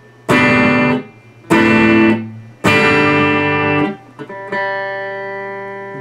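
Electric guitar playing suspended chords: three chords struck about a second apart, each stopped short, then a fourth left ringing out and slowly fading.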